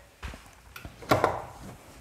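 A few light knocks of cookware being handled at the stove, with one louder clank about a second in.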